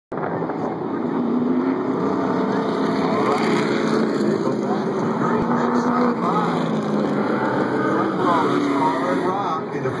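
Race car engines running steadily as a group of cars circles the oval past the grandstand at pace speed, with a public-address announcer's voice faintly underneath.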